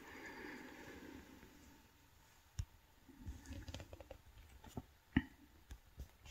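Faint, scattered clicks from handling and operating a laptop, a handful of them spread over a few seconds, the sharpest about five seconds in.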